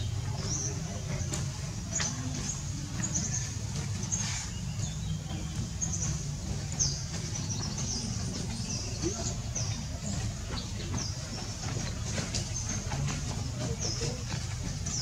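Outdoor background: a steady low rumble with short, high-pitched chirps repeating about once a second.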